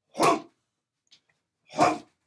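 Two short, sharp forceful exhalations from a man, about a second and a half apart, as he throws punches into a striking dummy.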